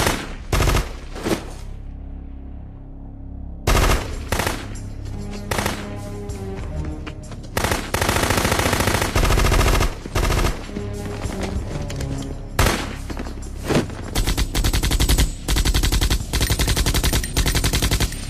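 Automatic machine-gun fire in long rapid bursts, with a brief lull about two seconds in and the heaviest, densest firing over the last few seconds.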